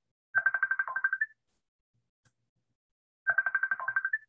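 Electronic phone ringtone ringing: a rapid trill about a second long, heard twice, about three seconds apart.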